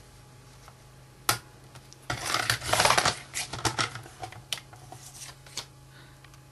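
Paper trimmer cutting a strip of cardstock. A sharp click about a second in, then the blade runs down the rail in a scratchy swish lasting about a second, which is the loudest sound. A few light clicks and taps follow as the card is shifted.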